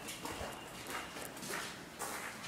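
Footsteps on a hard concrete floor, about two steps a second, as someone walks through a doorway into a bare room.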